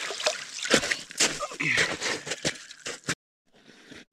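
Water splashing and dripping in an ice-fishing hole as a lake trout is let back in, a run of irregular wet splashes and drips that stops abruptly about three seconds in.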